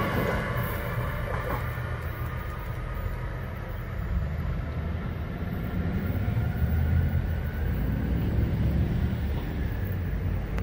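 NJ Transit Arrow III electric multiple-unit commuter train running away down the track, its rumble fading over the first few seconds. A steady low rumble stays on after it.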